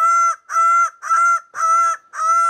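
Male greater bird-of-paradise calling in display: a run of loud, identical honking calls, about two a second, four of them here, each under half a second and all on the same pitch.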